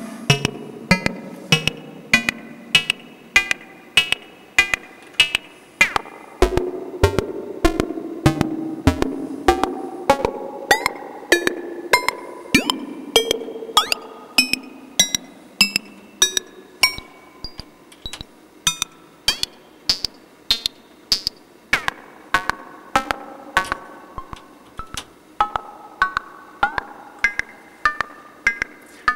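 Eurorack modular synthesizer playing a sequenced pattern of short percussive synth notes at changing pitches. The notes are amplitude- and ring-modulated through the Abstract Data Wave Boss VCA, and their timbre shifts as the source waveform is changed, heard through a spring reverb.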